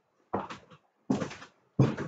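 Soapy water sloshing inside a lidded glass jar as it is swung round in circles, three sloshes about two-thirds of a second apart.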